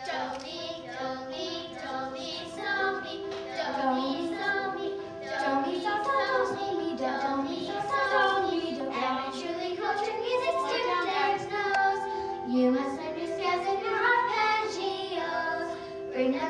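Children singing a song together, the melody running on without a break.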